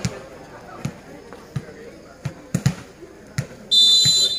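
A ball bounced several times on a hard court, a series of short sharp knocks. Near the end comes a loud, steady high-pitched referee's whistle blast, signalling the next serve.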